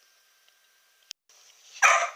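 A dog barks once, sharply, near the end, after a short click about a second in.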